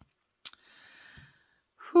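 A woman breathing in with a soft sniffle, then letting out a loud sighing 'whew' that falls in pitch near the end; she is close to tears.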